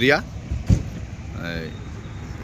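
Steady low rumble of road traffic on a highway, with a single dull thump a little under a second in and a brief faint voice near the middle.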